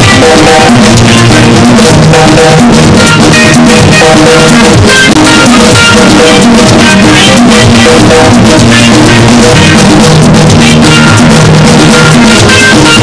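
Loud instrumental music from a live band: a drum kit keeping a steady beat under sustained chords.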